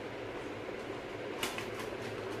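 Steady background room noise, with a few faint clicks about one and a half seconds in.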